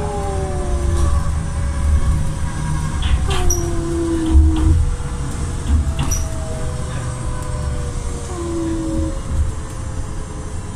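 Riding inside a moving city bus: a steady low rumble from the engine and road, with whining tones that slide down in pitch, and a few short rattles.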